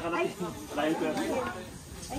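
People talking, over a faint steady hiss.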